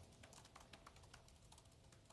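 Near silence: faint room tone with a scatter of soft, faint clicks.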